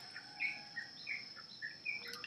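Faint bird chirping in the background: a string of short, high chirps, a few each second.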